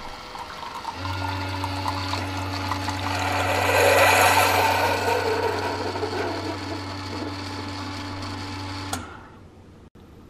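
Single-serve coffee maker brewing into a ceramic mug. A steady pump hum starts about a second in, and the hiss and trickle of coffee pouring into the mug swells midway and then fades. Both cut off suddenly near the end as the brew cycle finishes.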